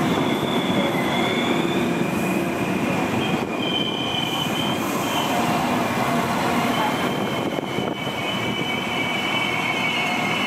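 Irish Rail Class 22000 InterCity Railcar diesel multiple unit running slowly past along the platform, a steady rumble with high, thin squealing from its wheels that comes and goes in several separate tones.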